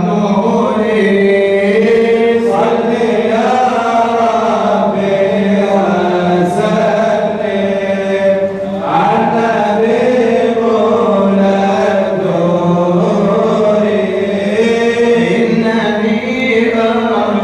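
Unaccompanied male chanting of madih nabawi, praise poetry for the Prophet, sung through a microphone in long, drawn-out melodic lines. There is a brief break about eight and a half seconds in.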